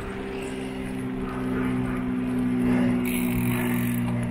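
Ride noise from a road bike picked up by a handheld camera: wind rumble on the microphone with a steady low hum, which swells a little in the middle. A hiss comes in near the end.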